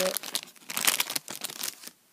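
An opened plastic red-nose packet crinkling as it is handled, a quick run of small crackles that is densest around the middle.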